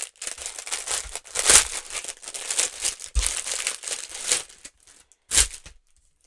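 Thin clear plastic packaging bag crinkling and rustling as it is pulled open and the wooden ornaments inside are handled, in irregular bursts with a sharp final crinkle about five seconds in.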